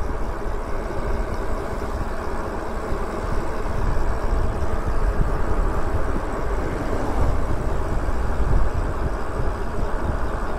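Wind buffeting the microphone of a camera mounted on a moving e-bike, with tyre and road noise underneath. It is an even, unpitched rush, heaviest in the low end, that rises and falls slightly as the bike rolls along.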